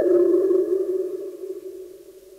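Tape music: a chord of sustained, steady electronic-sounding tones that shifts slightly at the start, then slowly fades away to quiet by the end.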